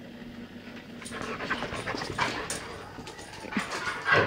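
A dog panting in quick breaths close by, louder from about a second in.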